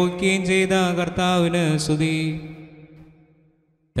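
A man chanting a Malayalam liturgical melody of the Orthodox Holy Qurbana in long held, gliding notes. A little over two seconds in, the chant fades out into silence, and it starts again abruptly at the very end.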